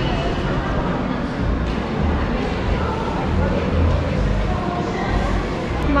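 Shopping-mall ambience: faint voices of passers-by over a steady low rumble.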